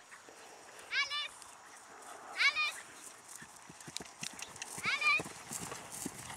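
Hoofbeats of a horse cantering on grass. They are faint at first and grow into a steadier, more distinct run of dull thuds in the second half as the horse comes close. Three short high-pitched calls are heard at intervals.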